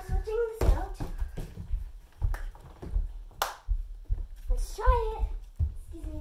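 Repeated thumps of children moving about and handling things on a wooden floor, with short high-pitched calls from a girl just after the start and again near the end.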